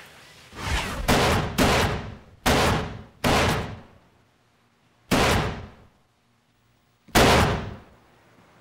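Pistol shots at an indoor shooting range: about six single shots in an uneven rhythm, each with a short ringing echo. The last ones come about two seconds apart.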